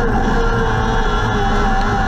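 Micro sprint car's motorcycle-based engine running at high revs, heard on board from the cockpit; its pitch dips slightly at the start, then holds steady.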